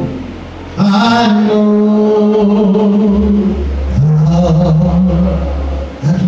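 A man's voice singing long held notes through the church PA in two drawn-out phrases, with a low sustained bass note underneath from about halfway through.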